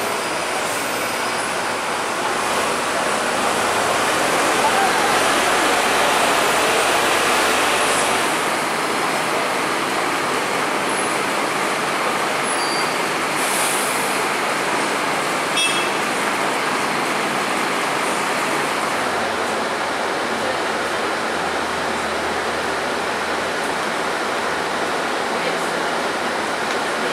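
Steady road-traffic and city-bus noise from a Mercedes-Benz Citaro bus and passing traffic, with indistinct voices in the background. It grows a little louder between about three and eight seconds in, then holds steady.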